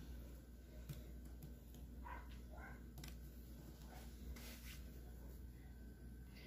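Very quiet handling sounds over a low steady hum: faint soft clicks and rustles as chopped pineapple is tipped from a glass bowl and pushed by hand onto cake batter in an aluminium pan.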